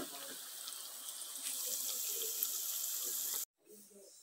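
Breadfruit slices frying in hot oil in a pan: a steady sizzle that grows a little louder about a second and a half in, then cuts off suddenly near the end.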